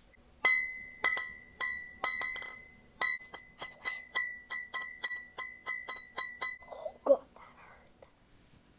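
Glass bottles tapped against each other, about twenty sharp ringing clinks that start half a second in and come faster and faster, each leaving a high glassy ring. A softer, duller knock follows near the end.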